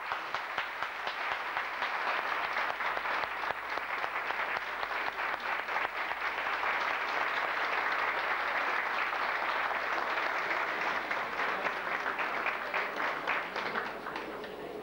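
A roomful of people applauding, building up over the first few seconds and thinning out near the end.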